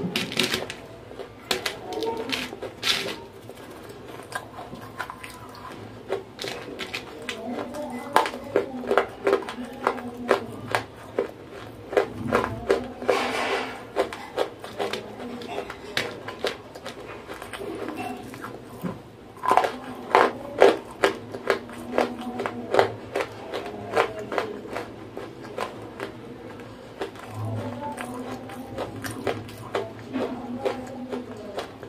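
Close-miked crunching and chewing of dry grey clay, with many sharp crackles from pieces being bitten and crumbled by fingers on a plastic tray. The crackling comes in busier runs, a few seconds at a time.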